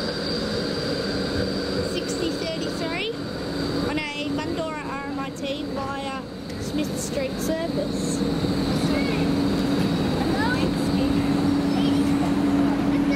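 E-class tram running past with a steady electric hum and a thin high whine, growing louder in the last few seconds.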